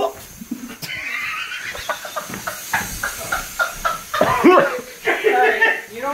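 Young man laughing hard in a string of short bursts, getting louder near the end.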